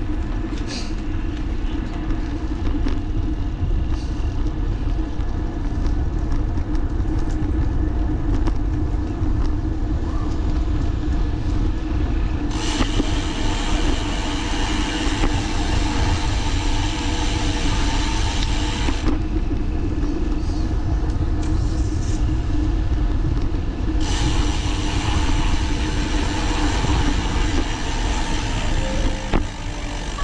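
Wind buffeting the camera microphone and rolling noise from riding along a paved path, a steady low rumble. A brighter hiss swells in about halfway through for several seconds, then returns near the end.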